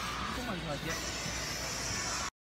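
Faint voices over a steady background hiss.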